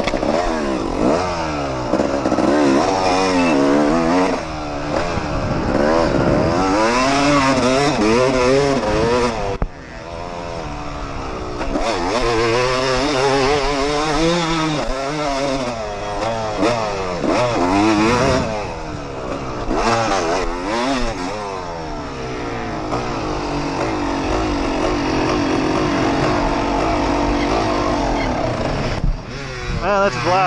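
Yamaha YZ250 two-stroke dirt bike engine revving up and falling back again and again as it accelerates and shifts, with a short drop off the throttle about ten seconds in.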